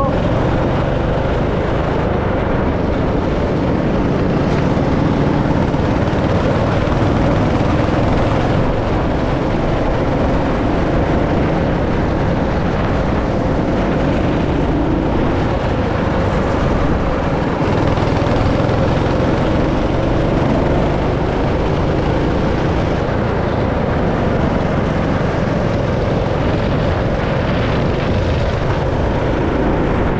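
Go-kart engine running hard, heard from the driver's seat as the kart laps the track. The engine note rises over several seconds midway.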